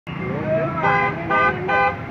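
Vehicle horn giving three short toots, about half a second apart, starting about a second in, over shouting voices in a crowd.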